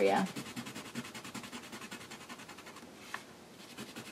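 Bic Mark-It felt-tip marker scratching faintly in quick, even strokes as it colours in a canvas sticker, with one small tick about three seconds in.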